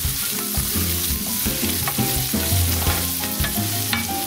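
Arborio rice and onion toasting in hot olive oil in a nonstick pan: a steady sizzle, with a wooden spoon stirring and scraping the grains around.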